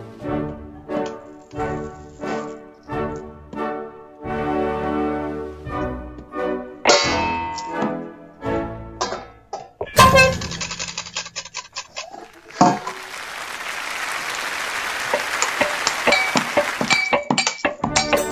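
Ensemble music: a series of short, separated pitched notes, brass-like, for about the first ten seconds, then a sharp crash. This gives way to several seconds of hissing, scraping noise, with quick clicks and taps near the end.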